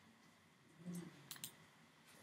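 Near silence in a small room, broken by a brief low hum a little under a second in and then three or four quick sharp clicks just after.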